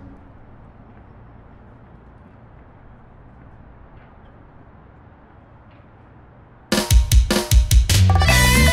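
Faint steady low background noise, then about seven seconds in a drum-kit fill of sharp hits that launches a loud guaracha song.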